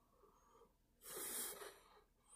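A man's single audible breath, faint and lasting about half a second, about a second in; otherwise near silence.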